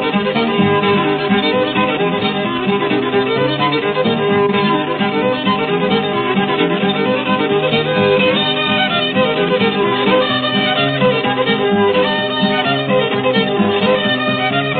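An old-time hillbilly fiddle tune, the fiddle playing the melody without pause, from an early country recording.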